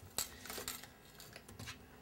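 Faint handling of aluminum foil tape being pressed onto a galvanized steel flue pipe to seal a combustion-analyzer test hole: a sharp click near the start, then faint rustling.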